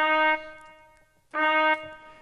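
Two synthesized trumpet notes at the same pitch, about a second apart, each held about half a second. They are the notation software's trumpet playback sounding each note as it is entered from a keyboard.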